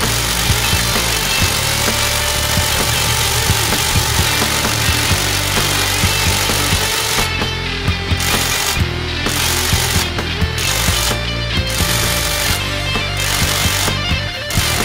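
Milwaukee M18 FUEL mid-torque impact wrench hammering on a wheel lug nut, on its third speed setting. It runs steadily for about seven seconds, then in short bursts with brief pauses. Rock music plays underneath.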